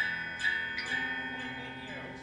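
Electric guitar with single notes picked one at a time and left to ring with a bell-like tone: three notes in the first second, then a slow fade.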